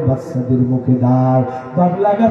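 A man's amplified voice preaching in a chanted, sing-song intonation, holding long steady notes with short breaks between them.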